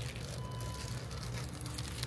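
Faint rustling of paper food wrappers over a steady low room hum.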